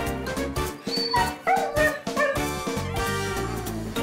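Husky giving a few short, pitch-bending calls between about one and two and a half seconds in, while the background music briefly thins out; upbeat background music runs under the rest.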